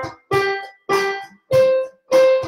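Single piano-keyboard notes played in a slow, even beat, about one every half second or so, stepping between two pitches: a landmark-note drill on C and G.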